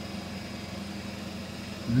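A steady mechanical hum with a faint high whine, unchanging throughout.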